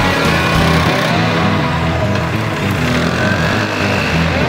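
Rock music track with electric guitar, with a motor scooter's engine riding past mixed in under it.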